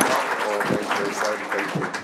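Audience applause with people talking over it at the end of a panel discussion.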